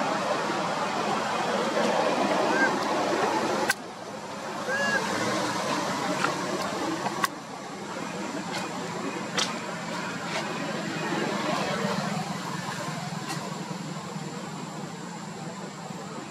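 Steady outdoor background noise. It is broken by two sharp clicks, about 4 and 7 seconds in, after each of which the sound drops in level, and there are a couple of brief, faint high chirps early on.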